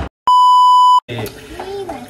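A single steady, high-pitched beep, about three-quarters of a second long, cut in with dead silence just before and after it: an edited-in censor bleep over a word.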